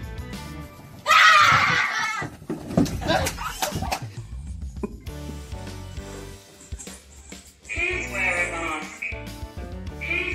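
Background music, with a person screaming loudly about a second in. High-pitched voices cry out again near the end.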